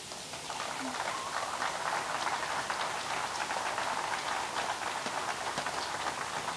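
Audience applauding, building up over the first second or so and then holding steady.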